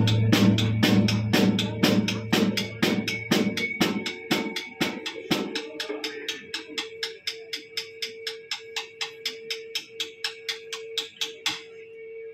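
A live rock band's drum kit keeps an even beat of sharp strokes, about four a second, while the bass and guitar fade away over the first few seconds. What is left is the ticking beat over one held guitar note, the song thinned down to a quiet drum breakdown.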